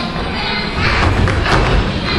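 A group of small children jumping on a wooden stage floor: a run of thuds begins a little under a second in, over background music.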